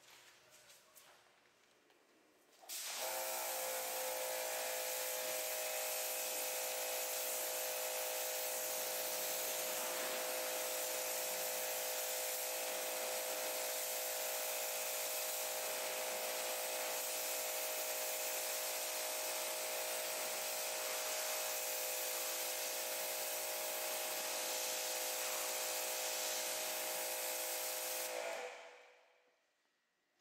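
Pressure washer rinsing soap off a car: a steady hiss of water spray with a steady hum from the machine under it, starting suddenly about three seconds in and fading out near the end.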